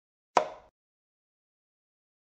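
Chess program's piece-move sound effect: a single short click as a rook lands on its new square.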